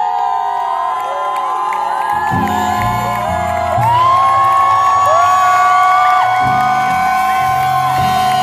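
Live pop song with a woman singer holding long notes with vibrato as the band comes in with low chords about two seconds in. Whoops and cheers rise from the crowd throughout.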